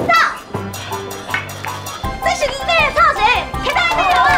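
Voices crying out in bursts over background music, the music holding a steady low note in the gap between them.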